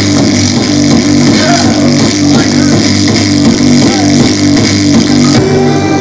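Loud live noise-rap music in an instrumental passage: distorted electric guitar over a repeating low bass pattern and beat, with no rapping.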